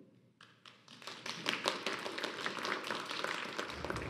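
Applause from a small church congregation: a few scattered claps about half a second in, filling out into steady clapping that dies away just before the end.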